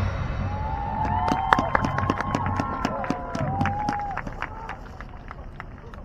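Soft passage in a marching band field show right after loud brass and timpani hits: scattered sharp clicks and several sliding, whoop-like pitched tones, fading away near the end.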